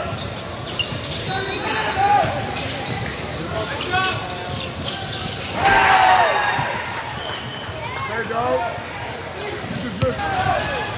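Basketball game play on a hardwood gym court: balls bouncing, sneakers squeaking, and players calling out. About six seconds in there is a loud shout as a shot drops through the hoop.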